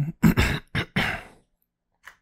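A man clearing his throat: about four short, rough bursts in quick succession over a little more than a second, then it stops.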